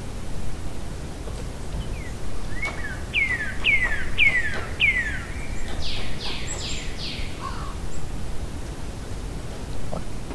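A bird calling: a run of five clear whistled notes, each falling in pitch, then a quick cluster of higher, buzzier notes, over a steady low background noise.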